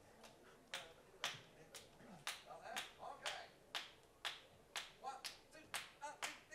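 Finger snaps in a steady beat, about two a second, counting a big band in at the tempo of the swing number it is about to play.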